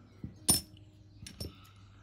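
A sharp metallic clink about half a second in, with a brief ring, and a couple of softer clicks: large Irish bronze penny coins knocking together as they are handled.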